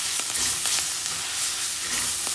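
Drumstick (moringa) leaves sizzling in a frying pan while a spatula stirs them, with a few light clicks of the spatula against the pan.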